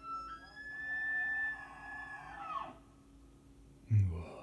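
A bull elk bugling: the call rises, holds a long high whistle for about two seconds, then drops away, followed near the end by a short, loud, deep burst.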